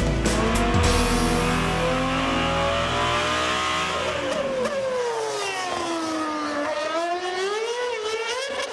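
A high-performance engine running hard. About halfway through its note falls steadily for a couple of seconds, then climbs again near the end, like an engine revving down and back up.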